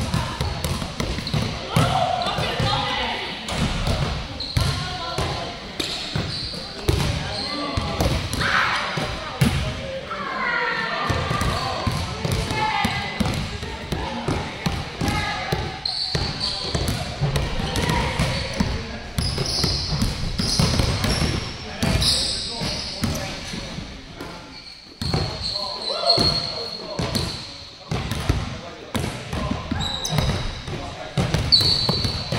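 Basketballs bouncing repeatedly on a gym floor as players dribble and shoot, the thuds echoing in a large gymnasium, with children's voices now and then.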